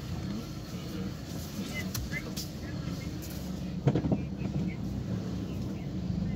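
Steady low engine and road rumble heard inside a moving car's cabin, with a single sharp knock about four seconds in.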